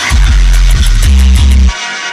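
Electronic music with heavy, sustained deep bass notes under rapid high percussive ticks; the bass cuts out suddenly about three-quarters of the way through, leaving a quieter upper layer.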